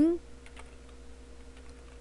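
Faint computer keyboard typing, a few soft key clicks over a low steady hum.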